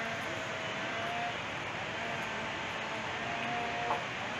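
Steady rushing roar of the distant waterfalls, with faint snatches of voices over it.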